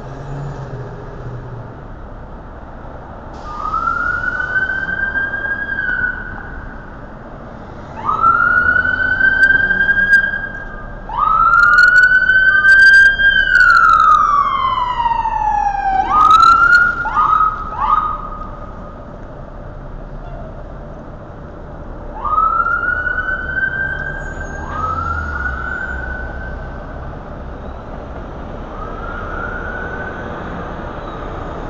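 Police car siren wailing in repeated rising sweeps, loudest in the middle, where one long falling sweep is followed by a few short quick yelps, then more wails near the end, over street traffic.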